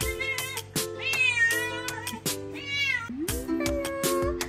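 A cat meowing twice, a longer drawn-out meow about a second in and a shorter one a little past halfway, over background music with a steady beat.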